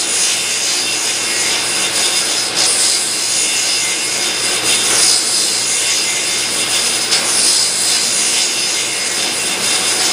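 Vintage Atlas table saw cutting wood over the steady rush of a shop vacuum drawing sawdust from the saw's sealed base through a hose. The sound swells and eases several times as the cuts go on.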